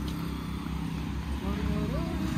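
A nearby motor vehicle engine running with a steady low hum, with a faint voice near the end.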